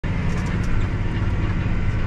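Tractor engine running steadily under load, heard from inside the closed cab while pulling a disc harrow through corn stubble, with a low, even drone.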